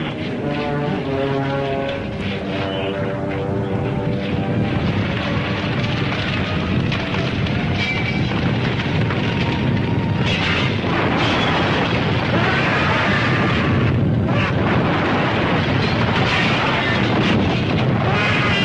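Film soundtrack: held musical notes for the first few seconds give way to a loud, dense rumble of action sound effects that builds through the rest.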